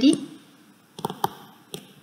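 A few short, sharp clicks, about a second in and again near the end, from handwriting on a computer screen with an input device in a small room. The tail of a spoken word fades out at the start.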